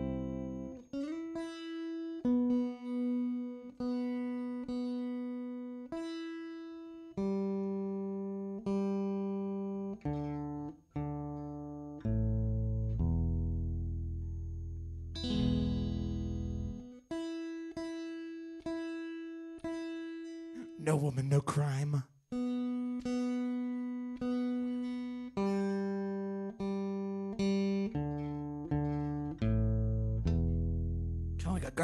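Guitar being tuned: single strings plucked one at a time and left to ring out, the same few notes repeated as the pitch is checked, with a quick strum across the strings about two-thirds of the way through.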